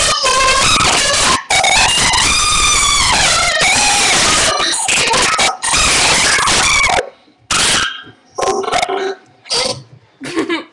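Loud, distorted playback of a recorded children's song, the voices high-pitched and gliding, cutting off about seven seconds in. After that come short, separate voice sounds from the children.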